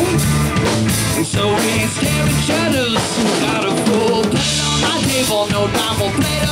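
Live rock band playing loud: a drum kit with snare and bass drum driving a steady beat under electric guitars and a repeating bass line.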